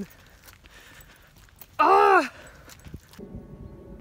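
A woman's short wordless voice sound, about half a second long, rising then falling in pitch, about two seconds in, over a faint outdoor background. Near the end the background changes to a faint steady hum.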